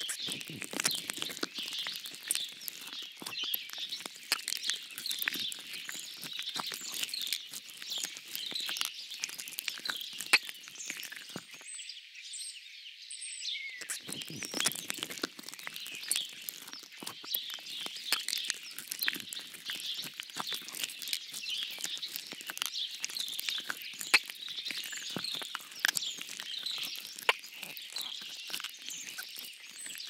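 Small birds chirping and singing steadily over a dense, fast crackle of clicks and patter. The lower crackle drops away for a couple of seconds about twelve seconds in, leaving only the chirps.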